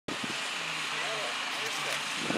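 Indistinct voices of people talking, with no clear words, over a steady outdoor background hiss.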